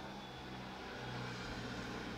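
Faint low rumble of background noise, swelling slightly about a second in and then easing off.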